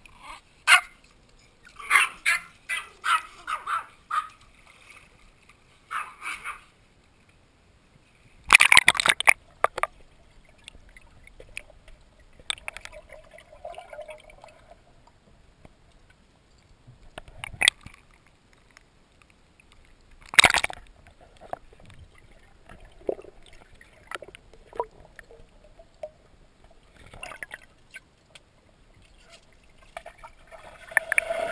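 Small dogs barking in short repeated bursts early on, then water gurgling and sloshing around a waterproof camera held under the pool surface, broken by a few loud splashes.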